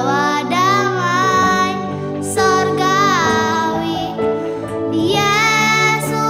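A young girl singing an Indonesian Christmas song over an instrumental backing track, in phrases of long held notes that bend in pitch.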